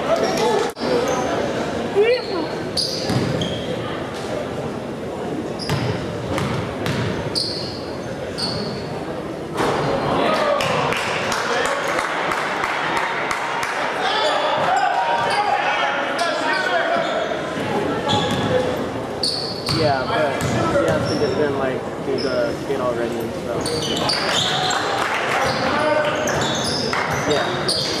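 Basketball bouncing and sneakers giving short high squeaks on a hardwood gym floor, over constant crowd chatter echoing in a large gym.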